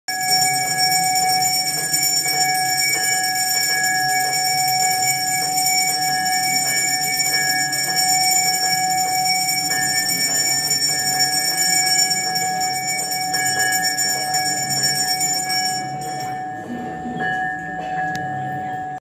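Temple bells ringing continuously, struck in a quick steady rhythm of about three strokes a second so that their tones keep sounding; the ringing thins out near the end.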